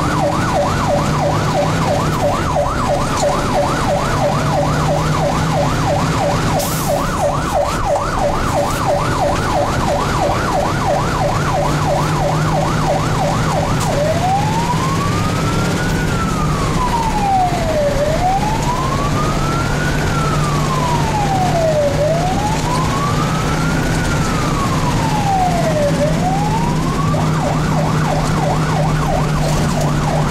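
Fire engine siren heard from inside the truck's cab, over the steady hum of its engine. It sounds a rapid yelp, switches about halfway through to a slow wail that rises and falls about every four seconds, and goes back to the rapid yelp near the end.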